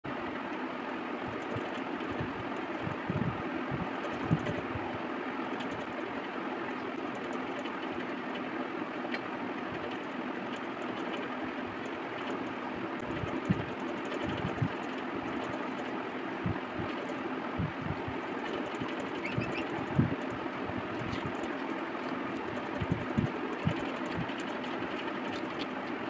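A steady background hum with scattered soft thumps and faint squelches, made as hands squeeze a lemon and mix rice with curry gravy on a steel plate.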